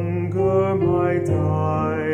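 A male solo voice singing long held notes with vibrato over an instrumental accompaniment with a steady low bass note, the melody moving to a new note about every second.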